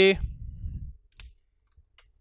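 The last syllable of a spoken word, then a low rumble and a single sharp click from a whiteboard marker about a second in, with a faint tick near the end.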